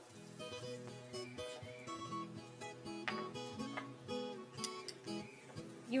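Background music: an acoustic guitar playing plucked and strummed notes at a moderate level.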